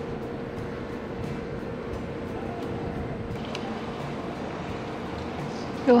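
Steady background noise with a faint steady hum and a few light clicks, as a small bolt and throttle-lock parts are handled at a motorcycle handlebar.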